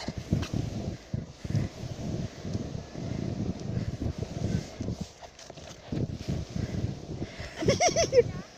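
Plastic pulka sled sliding down a snowy slope, its hull scraping over the snow with an irregular run of low bumps and thuds. A short high voice sounds near the end.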